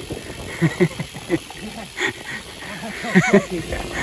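Men laughing in short bursts, once about a second in and again near the end, over faint road and wind noise.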